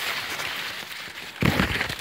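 Dry maize leaves rustling and crackling as they are brushed and handled close to the microphone, with a louder, thuddier brush against the microphone about one and a half seconds in.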